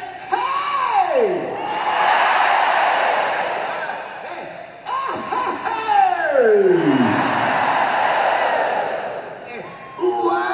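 Arena crowd yelling and cheering in two long waves. Each wave is set off by a long falling glide in pitch over the PA, the first at the start and the second about five seconds in.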